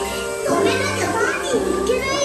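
Cheerful attraction soundtrack music played over the ride's speakers, with a high, childlike cartoon character voice speaking over it in gliding, sing-song phrases.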